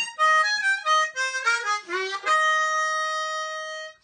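Diatonic blues harmonica played solo: a quick run of short notes, then one long held note for about a second and a half that stops just before the end.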